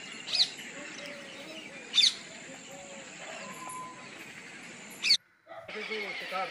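A bird gives three short, sharp, high calls, spread over about five seconds, above a faint outdoor background; the sound drops out briefly near the end.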